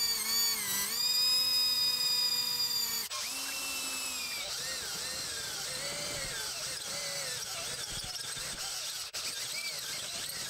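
Power drill turning a step drill bit through a metal panel, opening a pilot hole out toward a 7/8-inch step. A steady motor whine runs for about three seconds; after a brief dip the cut goes on with a wavering, uneven pitch as the bit bites into the metal.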